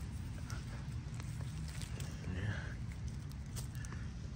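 A carrot being pulled up from a garden bed: its leafy tops rustle and the soil tears, with a few small clicks late on, over a low steady rumble on the microphone.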